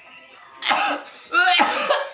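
A man's loud vocal outbursts under hard acupressure on his back: a short harsh burst about half a second in, then a longer cry falling in pitch, sounds of pain or discomfort at the pressure.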